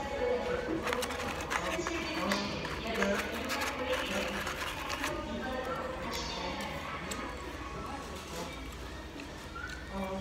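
Fast-food restaurant background of people talking and music playing, with a paper burger wrapper crinkling close by.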